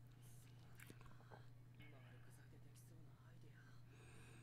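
Near silence: a steady low electrical hum, with a few faint clicks.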